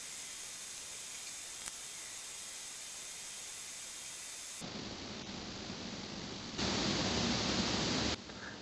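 Steady, even hiss of recording background noise with no distinct sound source, and one faint click about two seconds in. The hiss grows louder for the last second and a half.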